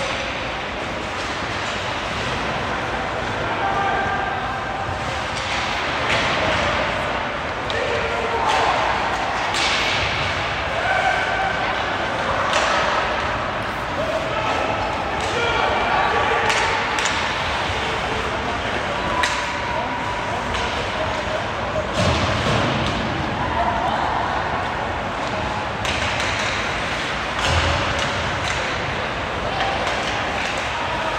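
Ice hockey play: skates scraping and carving the ice, with repeated sharp clacks and thuds of sticks and puck striking each other and the boards, and players' shouts over them.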